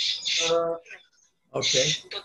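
Speech over a video-call connection: a short word with a hissing 'sh' and a held vowel, a pause of about half a second, then more talking.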